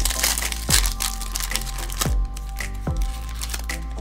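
A foil trading-card pack crinkling as it is opened, most busily in the first second, over background music with a steady deep beat.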